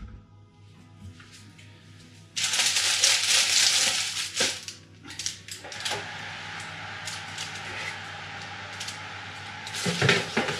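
Soft background music, then a sudden loud hiss for about two seconds, followed by a steadier hiss with light knocks and clatter as the oven door is opened and a baking tray of lamb ribs is handled to go into the oven.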